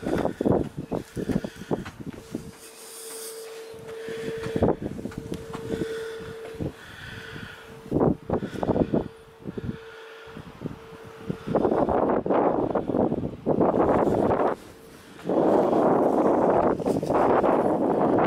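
Strong wind buffeting the camera microphone in gusts, from scattered thumps and rustle at first to a loud, continuous rush through the second half. A faint steady hum runs under the first half.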